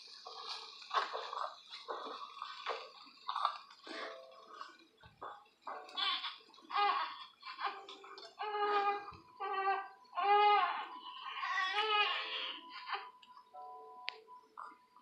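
A television playing in the background: voices from a TV drama, some high-pitched and sing-song, growing busier about halfway through, with a thin steady tone under the later part.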